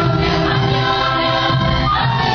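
String orchestra playing with a choir singing, in held, sustained chords.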